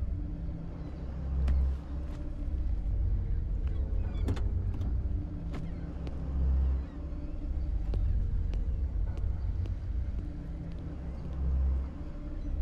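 Steady low rumble of a car running, under a deep swell that comes about every five seconds, with a few sharp clicks along the way.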